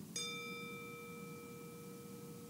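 A meditation bell struck once just after the start, ringing on with a clear, slowly fading tone whose highest overtones die away within about half a second. It marks the close of a silent sitting meditation.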